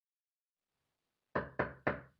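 Three quick knocks on a door, starting about a second and a half in.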